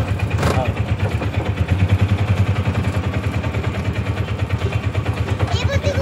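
Small engine of an auto-rickshaw running with a steady, rapid low throb, heard from inside the open cabin.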